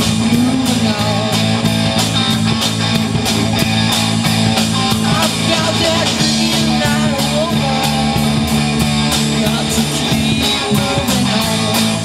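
Live rock band playing a song, with guitar over a steady beat.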